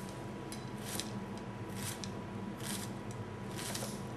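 Chef's knife slicing through a shallot and meeting a wooden cutting board: about five crisp cuts, spaced irregularly about a second apart.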